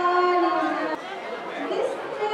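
A group of voices singing a held note that breaks off about halfway through, leaving a moment of crowd chatter.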